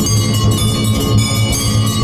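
Temple bells clanging rapidly and continuously for the aarti lamp offering, with a deep pulsing beat underneath.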